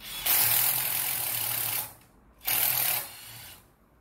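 Cordless drill driving the feed screw of a pipe-flaring tool, flaring the end of a copper refrigerant line: one run of about a second and a half, then a short second burst about halfway through.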